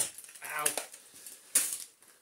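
A sharp click as a plug is pulled from a vacuum cleaner's electric wand, then, about one and a half seconds in, a brief loud rustling clatter as the wand and its cable are handled and laid down.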